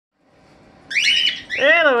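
A bird gives one short, high-pitched call about a second in, followed near the end by a woman saying "hello".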